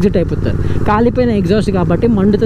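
A man talking, with a steady low motorcycle engine drone underneath as the bike is ridden.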